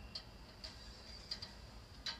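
Faint, irregularly spaced clicks, about four in two seconds with two close together, over a faint steady high-pitched tone and low background hum.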